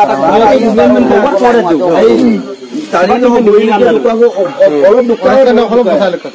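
Loud human voices talking, with a brief lull about two and a half seconds in.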